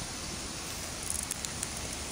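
Steady hiss of falling rain, with a light patter of nearby drops from about a second in.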